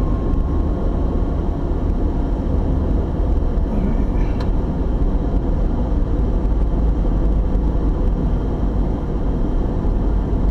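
Steady low rumble of a moving car, engine and tyre noise heard from inside the cabin. A faint thin tone fades out early on, and there is a faint click about four and a half seconds in.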